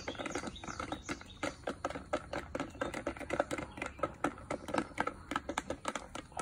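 Chickens pecking feed from plastic bowls: rapid, irregular clicks of many beaks striking the bowls and ground, with soft clucking now and then.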